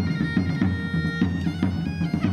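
Traditional bagpipe (gaita) playing a lively dance tune with held, steady notes, over a drum beating a quick, even rhythm of several strokes a second.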